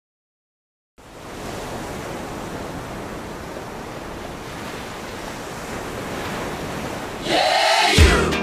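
Steady rushing noise like surf, fading in about a second in and growing slightly louder, with a brighter swelling sound near the end as music with guitar and a beat begins.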